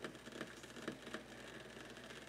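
Faint, irregular ticks and crackles from water heating in the glass lower bowl of a vacuum coffee maker on an electric stove, over a low steady hum.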